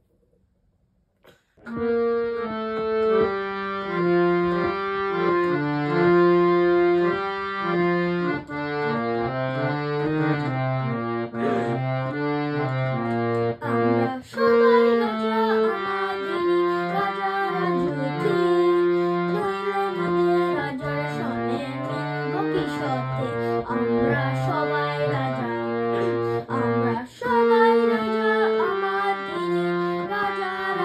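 Bina Flute reed harmonium being played: a melody of sustained reed notes over held lower notes, starting about a second and a half in.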